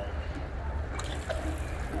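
Water sprinkling from a hand-pumped shower-head nozzle onto a tray of wet sand and gravel, with a light click about a second in.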